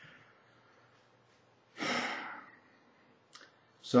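A man's single audible breath, like a sigh, about two seconds in, taken in a pause between sentences; a faint mouth click follows shortly before he speaks again.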